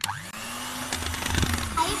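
Electric hand mixer switching on and spinning up, then running at a steady speed with its beaters whipping cream in a steel bowl.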